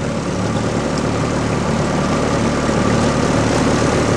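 Outboard motor of a coaching launch running steadily, a low even hum with a hiss of wind and water over it.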